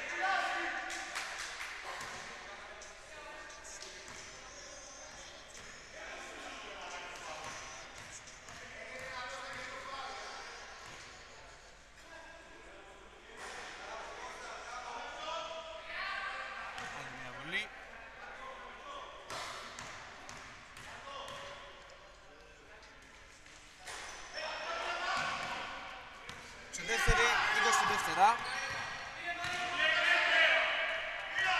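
A basketball bouncing on a wooden gym floor during free throws, with voices around the court. Near the end, as play resumes, there is a sharp bang and a burst of squeaks.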